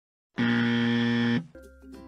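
A 'wrong answer' buzzer sound effect: one flat, steady buzz about a second long, starting a moment in and cutting off, marking a claim as false. Soft background music comes back in after it.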